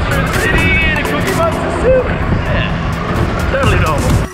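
A go-kart's engine running and wind buffeting the microphone as the kart drives along, with a man's voice calling out over the noise.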